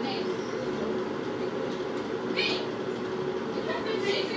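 A steady low hum runs throughout, with faint voices from elsewhere and a short higher-pitched sound about two and a half seconds in.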